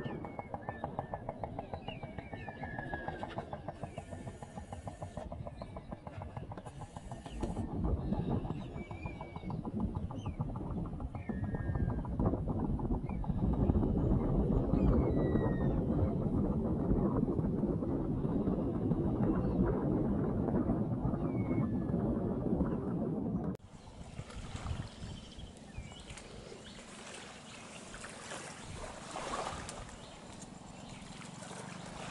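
Shorebirds calling with short rising and falling whistles over a steady low rumble. The rumble cuts off abruptly about three-quarters of the way through, leaving a quieter, higher hiss.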